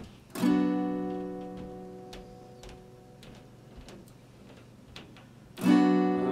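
Acoustic guitar: a chord strummed about half a second in and left to ring out and fade over a couple of seconds, then a second strum near the end as the playing begins.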